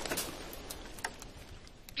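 The fading tail of an explosion sound effect: a noisy rumble dying away steadily, with a few sharp crackles scattered through it.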